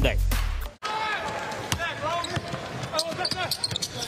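A basketball dribbled on a hardwood court, bouncing repeatedly, with voices in the arena. Music cuts off abruptly about a second in.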